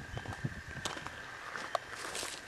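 Faint rustling and scattered small clicks of a handheld camera being moved about, over a faint steady high-pitched tone.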